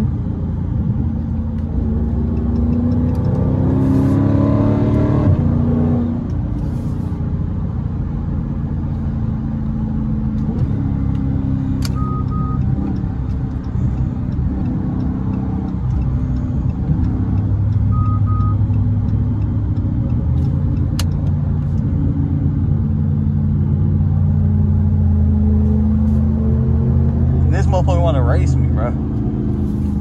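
SRT 392's 6.4-litre HEMI V8 heard from inside the cabin on the move, its note rising as it pulls a few seconds in, then running steadily at cruise, and rising again near the end. Two short beeps come about halfway through.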